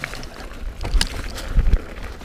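Wind buffeting the camera microphone while a Commencal Meta V4.2 mountain bike rattles down a rough leaf-covered trail, with a sharp knock about a second in and heavy low thumps near the end.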